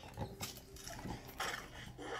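A banded mongoose scrabbles about on a wooden floor with a small plastic toy, making a few short knocks and scuffles.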